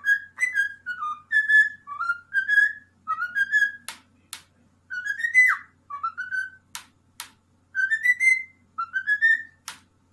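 A cockatiel whistles a run of short, rising chirped notes in phrases. Three times the whistling is broken by a pair of sharp taps as the bird bows and strikes its beak on the wooden table.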